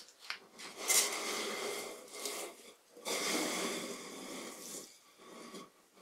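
Taped-together wooden staves being rolled up into a segmented cylinder on a bench: the strips knock and rub against each other as the segments close. It comes in two spells of about two seconds each, with a sharp knock at the start of the first.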